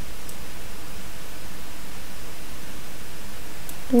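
Steady hiss of the recording's background noise with no speech, with two faint clicks, one just after the start and one near the end.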